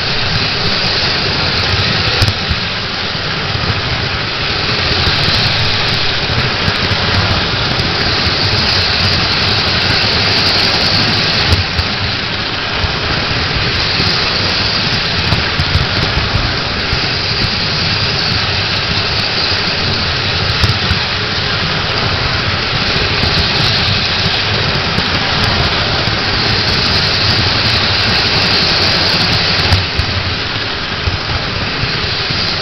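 Electric model train running on three-rail tinplate track, heard from a car riding in the train: a steady loud rumble of motor and wheels on the rails, with a few louder clicks now and then.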